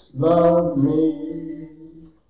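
A man singing a slow hymn solo: one long, drawn-out sung phrase that trails off near the end.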